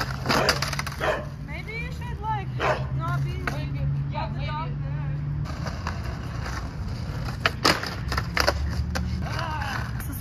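Skateboard wheels rolling on concrete, with a couple of sharp clacks from the board about three quarters of the way through. A woman laughs at the start, and a dog barks a few times.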